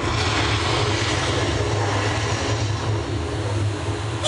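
A steady rushing roar with a deep rumble, a sound effect played over the show's loudspeakers. It begins as the music cuts off and eases a little near the end.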